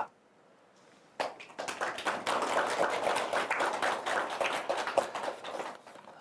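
An audience applauding with many hands, starting about a second in and dying away near the end.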